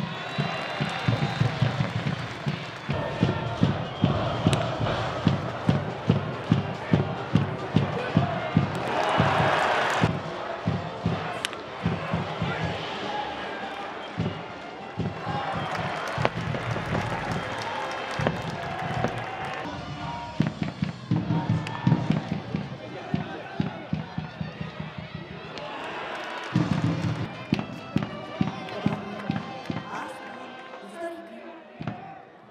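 Stadium cheering section: a steady drumbeat with brass playing and many voices chanting together, and a short burst of crowd noise about nine seconds in.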